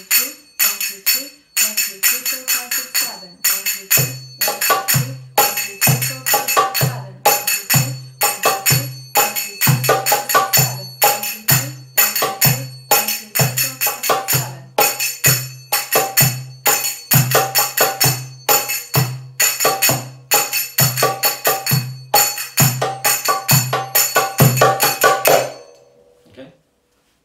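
Brass finger cymbals (sagats, or zills) struck in the 3-3-7 pattern: two triplets, then six alternating strokes and a single, repeating with an even ring. About four seconds in, a darbuka joins with deep doum strokes in the ayoub rhythm. Both stop together just before the end.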